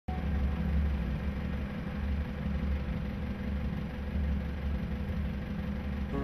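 A motor cruiser's engine running steadily, a low, even drone heard from on board the boat.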